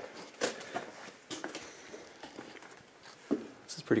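Irregular footsteps and knocks on old wooden steps and boards: a handful of separate thumps spread across a few seconds.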